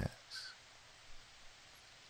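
Faint, steady rain hiss from a rain ambience bed, with one short, faint call-like sound about half a second in.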